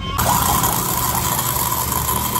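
Steady hiss of a pressurised spray from a hose nozzle washing a removed car air-conditioning compressor, with a steady whistling tone in it. It starts abruptly a moment in.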